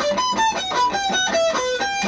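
Electric guitar on a single-cutaway solid body playing a fast run of single notes, about seven a second, stepping back and forth between pitches in a pedal-point lick.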